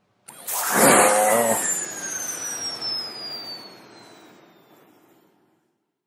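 Jet-flyby sound effect: a sudden loud rush with a whistle that falls steadily in pitch, fading away over about four seconds. A brief laugh comes in near the start.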